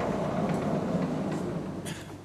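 A sliding blackboard panel being moved along its track: a rolling rumble with a few light knocks that cuts off near the end.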